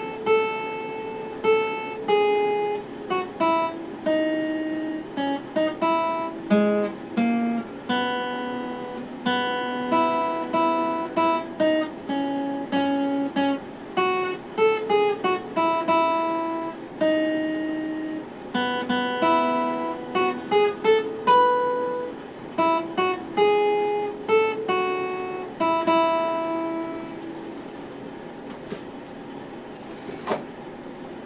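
Steel-string acoustic guitar playing a picked melody of single notes and occasional chords. Near the end a last note is left to ring and fade.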